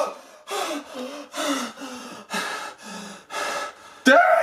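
A man breathing hard in quick, audible gasps, about seven breaths in and out.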